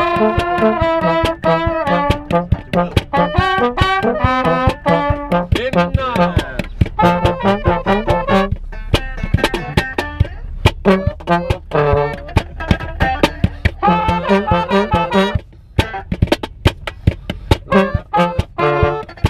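Small brass band playing a lively second-line style tune in the close confines of a car: trombone and trumpet over a steady, fast percussive beat, with a brief dip about three-quarters of the way through.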